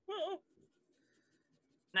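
A person's short laugh with a wavering pitch near the start, then faint room tone until a spoken word at the very end.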